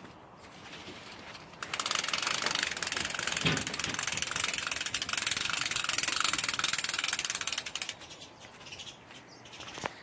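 Crank handle of a 9-foot CANVAS Market patio umbrella ratcheting quickly and steadily as the canopy is cranked up. The clicking starts about two seconds in and stops about two seconds before the end.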